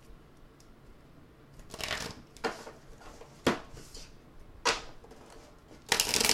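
A deck of tarot cards being shuffled by hand: quiet at first, then a few short rustles and sharp snaps of the cards, about one a second, ending in a longer, louder riffle.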